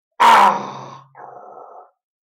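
A man's voice lets out a sudden, very loud vocal outburst that fades over about a second, then a quieter, lower, drawn-out groan lasting most of a second.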